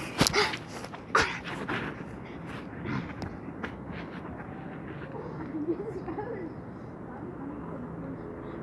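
A few knocks and scuffs right at the microphone in the first couple of seconds, as feet move on the grass beside it, then faint voices of boys playing across a lawn.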